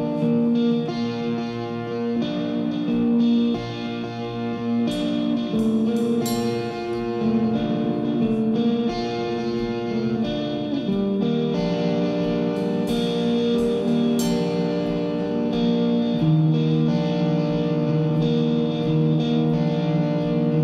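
Amplified acoustic guitar playing slow worship-song chords in an instrumental passage, each chord ringing for a second or two before the next.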